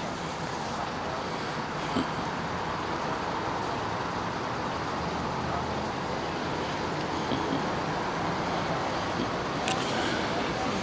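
Steady road traffic noise at a street intersection: a low, even rumble of cars with no distinct single vehicle standing out.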